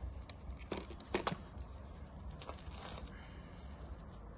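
Gloved hands working bait through a plastic tube and bait mesh: a few faint clicks and scrapes in the first second and a half, then a soft rustle near the end, over a steady low rumble.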